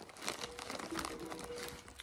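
Plastic Chex Mix snack bag crinkling as a hand reaches into it, a run of small irregular crackles.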